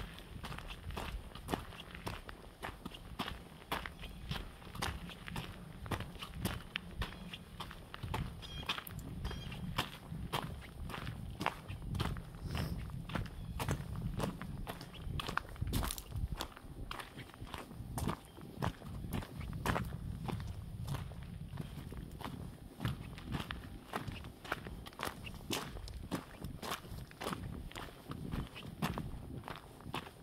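A hiker's footsteps crunching on gravel and dry, grassy ground at a steady walking pace of about two steps a second.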